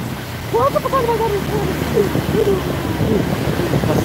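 Motorcycle engine running steadily under way, with wind buffeting the microphone. From about half a second in, a man's voice calls out over it without clear words.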